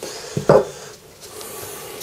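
Metal parts of an airsoft rifle's upper receiver being handled: a short knock about half a second in, then a quieter sliding, rubbing sound of metal on metal.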